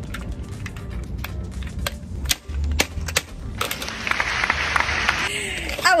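Retractable tape measure with a stuck blade: scattered clicks as the lock and case are worked, then a sliding rattle lasting about a second and a half as the steel blade is pulled out.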